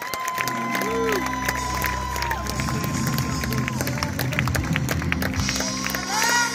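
A live band plays through a stage PA, opening with a sustained chord and a long held high note, while the audience applauds. The crowd rises near the end into cheering and whoops.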